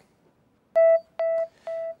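Short electronic transition sting of a TV news programme: one keyboard-like note sounded three times, each repeat quieter than the last like an echo, starting just under a second in.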